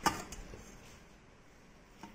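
A single sharp knock of a stainless-steel bowl of ice water, with a brief ring and a lighter click just after.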